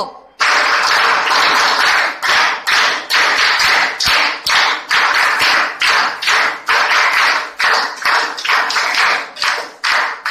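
Loud clapping from a group of people, starting suddenly about half a second in and going on in uneven pulses a couple of times a second.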